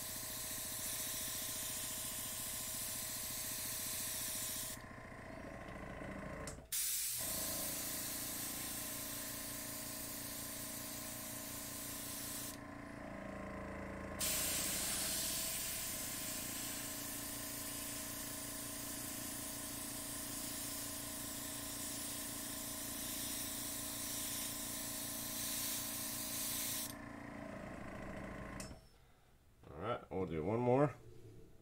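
Gravity-fed PointZero airbrush spraying acrylic paint, a steady hiss of air and paint that cuts out twice for a second or two and stops shortly before the end, with a steady motor hum from the air compressor beneath.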